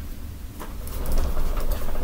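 Handling noise from an upright vacuum cleaner: a low rumble with a few faint plastic clicks and knocks, getting louder about halfway through.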